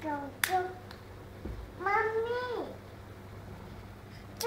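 A toddler's voice: a few short syllables with a sharp click about half a second in, then one long drawn-out syllable about two seconds in that falls away at its end.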